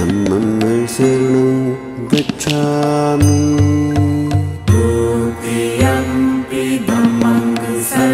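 Devotional Buddhist chant set to music: a voice sings long held notes over a steady low drone, with a few low beats and sharp strikes.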